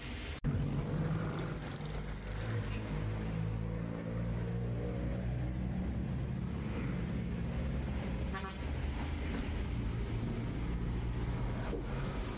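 Engine of a passenger vehicle heard from inside while riding: a steady low drone whose pitch rises and falls with speed, starting suddenly about half a second in. A brief horn toot sounds about eight and a half seconds in.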